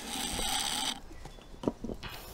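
Marinade injector drawing apple-juice brine up through its needle: a slurping hiss for about a second.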